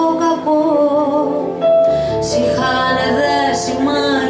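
A woman singing a slow melodic line with vibrato over instrumental accompaniment. A new sung phrase begins about two seconds in, and a deeper low accompaniment comes in with it.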